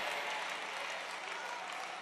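Congregation applauding, a fairly quiet, even clatter of clapping that eases off a little.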